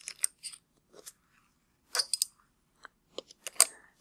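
Metal binder clips being snapped onto the edges of a clear plastic two-piece ball mold: a scattered series of short, sharp clicks, in several clusters as each clip goes on.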